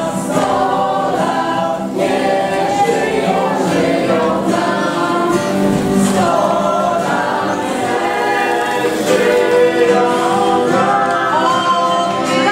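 A group of voices singing a birthday song together, with acoustic guitar accompaniment.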